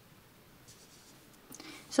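Near silence with faint rustling as hands handle yarn and a crochet hook, then a soft breath in just before speech resumes at the end.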